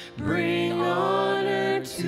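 Two women singing a slow worship song with piano, holding long notes; there is a brief break for breath just after the start.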